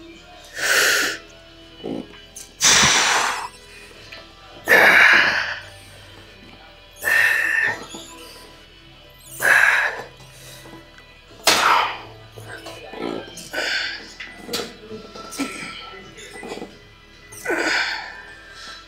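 A man's heavy, forceful breaths with the effort of leg extension reps, one burst about every two seconds, close to the microphone, over faint background music.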